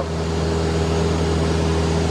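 Mooney M20C's four-cylinder Lycoming engine and propeller droning steadily in flight, heard inside the cabin.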